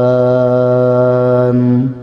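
A man's voice chanting Arabic through a microphone, holding one long steady note at the end of a phrase. The note stops just before the end.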